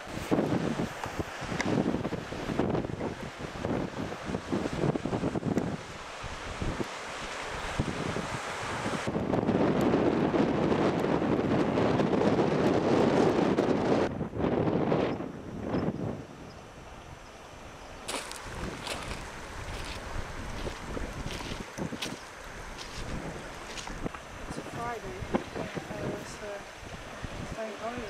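Wind blowing on the camera microphone in gusts, loudest for several seconds in the middle, with the sound changing abruptly a few times.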